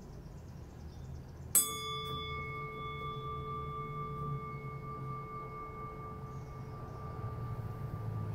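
A meditation bell struck once, about a second and a half in, then ringing on with a clear tone of several steady pitches that fades slowly over several seconds.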